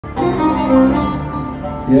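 Live music for a Good Friday hymn: a short melodic phrase gliding between notes, with a louder new note swelling in near the end.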